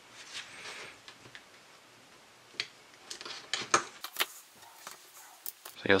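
Light metallic clicks and scrapes of small parts: an airsoft hop-up chamber on a brass inner barrel being worked apart with a small flathead screwdriver. The sharp ticks come in a scattered run through the middle and latter part.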